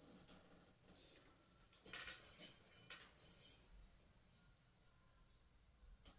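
Near silence: room tone, with a brief cluster of faint clicks and rustling about two seconds in and a couple of weaker ticks a second later, from small objects being handled.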